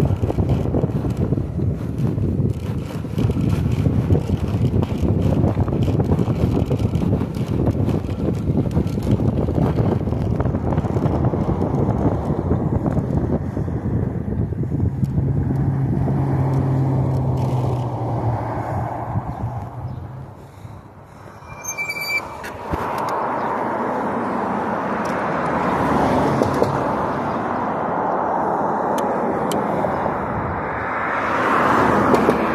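Wind buffeting the microphone with road noise while riding an electric bike. It eases off for a moment about two-thirds of the way in, a brief high-pitched squeal sounds, and then a steadier hiss follows.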